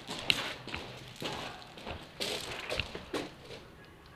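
Scattered sharp taps and thuds at an irregular pace, the loudest about a third of a second in.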